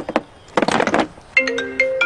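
A short scuffing noise as the motorcycle seat is set down. About one and a half seconds in, a mobile phone ringtone starts, a marimba-like melody of stepped notes: the alert call placed by the bike's anti-theft lock, which rings even with the device pulled off the bike.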